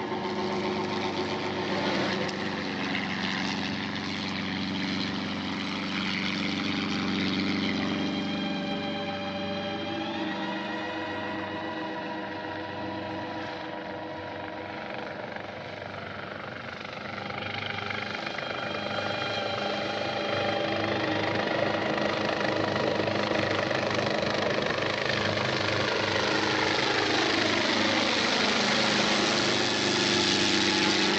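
A steady helicopter drone from the soundtrack, mixed with a film score of held tones. Near the end, one tone glides down and back up.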